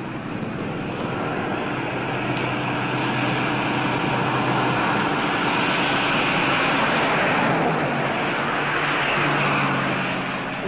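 Rushing vehicle noise that builds over several seconds, dips briefly, and swells again near the end.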